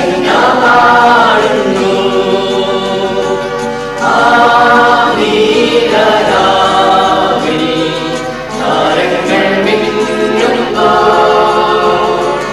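Church choir singing a Malayalam Christmas carol in long held phrases.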